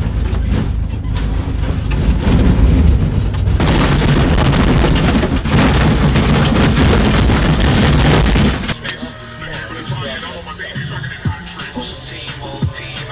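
Cab noise of a VW split-screen bus on the move: its air-cooled flat-four engine running with a heavy, steady low rumble. About nine seconds in it cuts off suddenly, giving way to quieter background music and voices.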